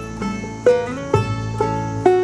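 Acoustic guitar picked between sung lines: alternating bass notes and strummed chords, a new stroke about every half second, each ringing out.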